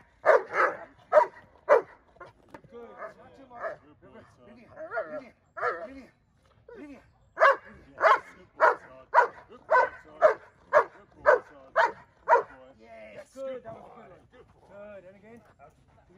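A Doberman barking at a decoy in protection training. There is a quick volley of about four barks at the start, a pause, then a steady run of about ten barks at roughly two a second before it stops.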